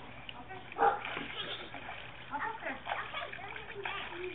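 Water splashing as small children play in a swimming pool, with children's voices calling out over it; the loudest is a brief burst about a second in.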